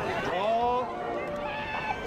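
Human voices in long, wavering calls, several overlapping, their pitch gliding up and down.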